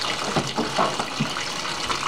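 Top-loading washing machine filling with cold water: a steady rush of water pouring into the tub around the agitator.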